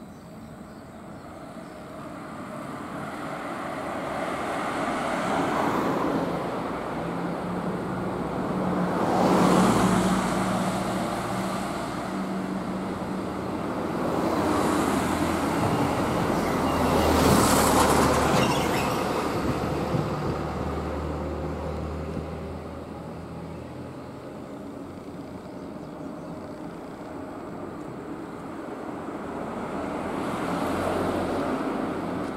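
Road traffic: vehicles passing on a street, with the engine and tyre noise swelling to a peak about nine seconds in and again around seventeen seconds, then fading.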